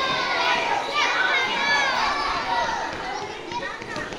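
A crowd of children shouting and calling out together, many high voices overlapping, easing off somewhat near the end.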